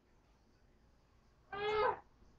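A single short, high-pitched cry lasting about half a second, near the end, with a little quiet rustle before it.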